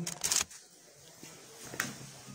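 A phone handled and swung around: a short burst of rustling and knocking for about half a second, then a quiet room with one sharp click near the end.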